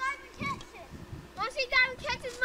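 A child's high-pitched voice calling out without clear words, briefly at the start and again through the second half.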